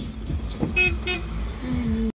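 Car horn giving two short toots in quick succession a little under a second in, over the low rumble of a vehicle engine running; a steadier, lower tone follows near the end.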